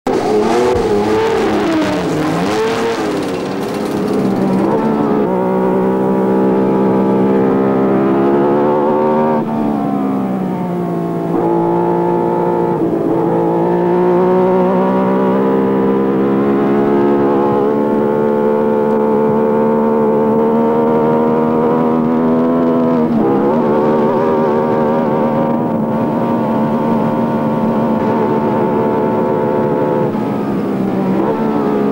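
A 1975 Formula 1 car's engine heard onboard at high revs, loud and steady, its pitch dropping and climbing back a few times as it goes through the gears.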